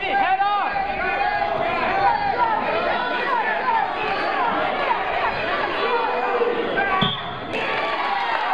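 Spectators in a gym shouting and yelling over one another during a wrestling bout, with a sharp thud about seven seconds in followed by a brief high tone.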